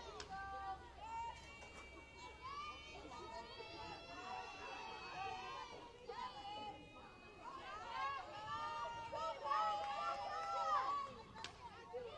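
Voices of players and spectators calling out and chattering across a softball field, fainter than the commentary, with one long drawn-out call near the end.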